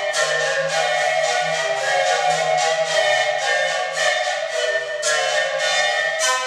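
An ensemble of sikus, Andean bamboo panpipes, playing together, many players at once. The notes come as breathy, pulsing attacks several times a second over a steady low tone.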